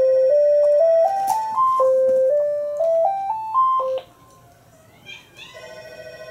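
A simple electronic melody of pure beeping tones climbing six steps up a scale, played twice, then cutting off suddenly. After a short quiet gap, a single steady electronic tone comes in near the end.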